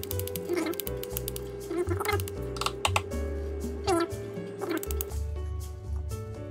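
Fingers flicking a plastic syringe barrel in quick runs of sharp clicks, tapping it to dislodge air bubbles from the saline, over background music.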